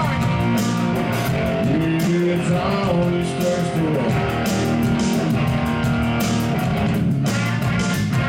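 Live country-rock band playing an instrumental passage: an electric guitar lead with notes that bend in pitch, over bass and a steady drum beat.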